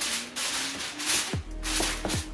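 Aluminium foil crinkling as it is pressed down over a baking dish, over background music with a low, thudding beat that comes in about halfway through.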